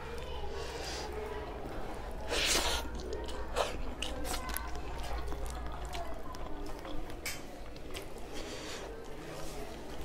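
Close-up sounds of a person eating rice and vegetable curry by hand: wet chewing, lip smacks and small mouth clicks, with a short loud breath about two and a half seconds in.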